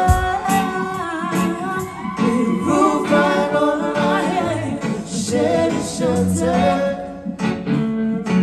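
Live band music with singing, the vocal carried over keyboard and drums.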